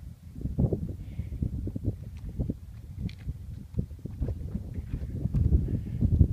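Footsteps scuffing and crunching over rough lava rock, uneven steps with small knocks of stone.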